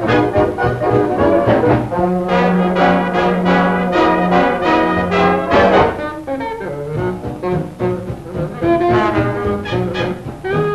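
Swing big band playing, the brass section of trumpets and trombones to the fore. A loud ensemble passage over a long held low note gives way to a quieter stretch a little after halfway.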